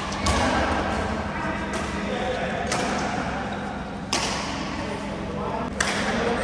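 Badminton rally: four sharp smacks of rackets striking the shuttlecock, roughly one and a half seconds apart.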